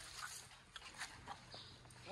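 Quiet, with a few faint scattered clicks and soft rustling as Asian elephants take bananas with their trunks and eat them.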